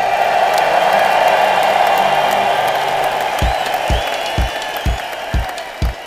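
Ballpark crowd cheering and applauding. About halfway through, a bass drum beat starts under the crowd, about two beats a second.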